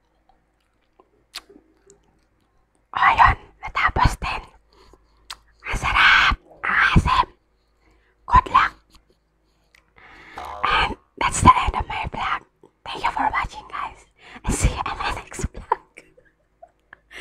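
A woman's voice speaking softly in short phrases, very close to a handheld earphone microphone, starting about three seconds in after a near-silent start.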